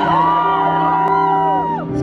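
Live music: a stage piano holding a chord, with high voices whooping and sliding in pitch over it. The chord changes near the end.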